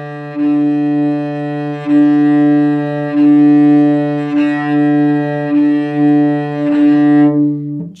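Cello's open D string bowed in long, even strokes as a beginner's open-string bowing exercise: one steady, unchanging note with a brief break at each change of bow direction, about every second and a quarter. The note stops near the end.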